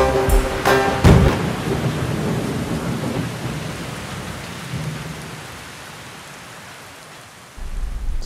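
A music cue ends with a low rumble about a second in, then a steady rain-like hiss fades out slowly.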